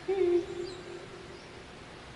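A man's short choked sob: a low held moan that starts loud and fades within about a second, as weeping breaks off his Quran recitation.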